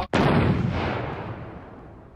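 A single explosion sound effect: a sudden blast that dies away over about two seconds.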